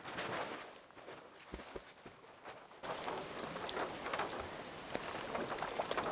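Lake water splashing and sloshing as a windsurf sail topples into the water and the rider scrambles on the board, in many small irregular splashes that grow louder about three seconds in.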